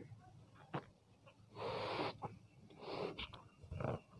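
Breath blown by mouth into a rubber balloon as it inflates: a half-second rush of air about one and a half seconds in, then a shorter one near three seconds.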